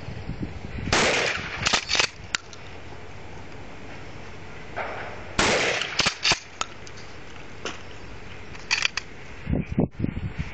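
Two shotgun blasts from a pump-action shotgun, about four and a half seconds apart, each ringing briefly. After each shot comes a quick series of metallic clacks as the pump is racked to chamber the next shell.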